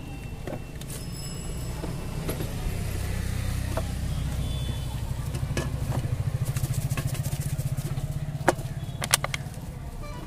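Engine of a passing motor vehicle, a low rumble that swells over several seconds, is loudest a little past the middle and fades near the end. A few sharp clicks come near the end.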